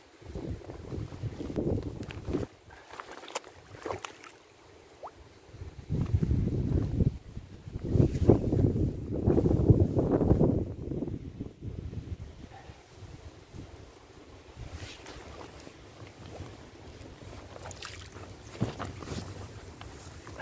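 Water sloshing and splashing in a fish-retention sling held in the shallows as the fish is let swim out, loudest in a burst of splashing about halfway through, with wind buffeting the microphone.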